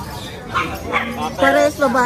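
Small dogs yipping: several short, high-pitched yelps in quick succession.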